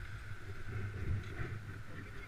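Wind buffeting a helmet-mounted camera's microphone during a downhill ski run, an irregular low rumble, with the hiss of skis sliding on packed snow.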